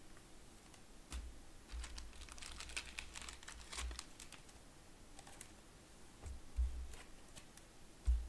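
Faint, irregular light clicks and taps, thickest about two to four seconds in, with a few soft thumps on the tabletop: handling noise from sorting trading cards between packs.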